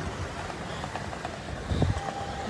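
Road traffic on a busy city street: a steady wash of passing engine and tyre noise, with a low thump near the end.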